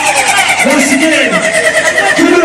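A man's voice shouting into a microphone through a loud, distorted PA, over a steady held high tone.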